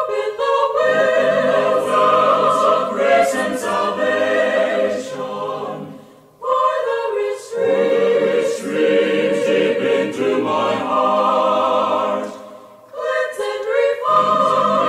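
Mixed choir singing a hymn verse a cappella in close harmony, in three sung phrases with short breaths between them, about six seconds in and again near the end.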